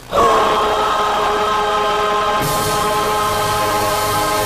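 Gospel choir singing, coming in sharply on a loud chord that scoops up into pitch and is then held steady. The band joins underneath about halfway through, adding bass and a cymbal-like hiss.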